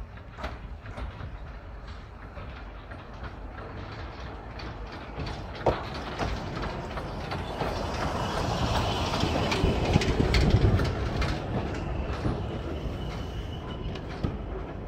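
Small steam tank locomotive and a wooden passenger carriage rolling slowly past at close range, with wheels clicking over the rail joints. It grows louder and is loudest as it goes by, about ten seconds in. A thin squeal comes in near the end.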